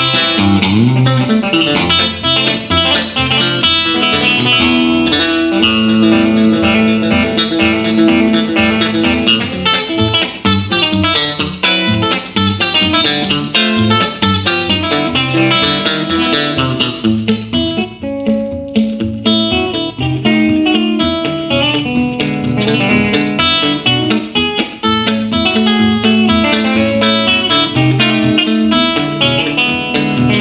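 Fender Jaguar electric guitar playing an instrumental piece, with low bass notes running under the melody. A little past halfway the playing briefly thins to a single ringing note before picking up again.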